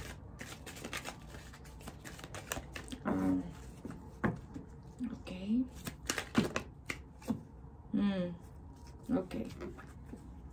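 A deck of cards being shuffled by hand: a run of quick, light clicks and flicks as the cards slide and slap together.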